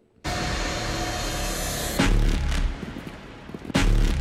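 Dramatic film-trailer music that cuts in abruptly, with two sudden heavy low hits, about two seconds in and again near the end.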